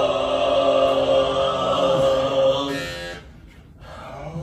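Overtone chanting: a steady sung drone with a strong overtone held above it, fading out a little under three seconds in, then a brief pause and a new chanted tone starting near the end.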